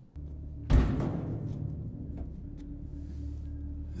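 TV drama soundtrack: a low sustained music drone, with a heavy thud about three-quarters of a second in, the loudest moment.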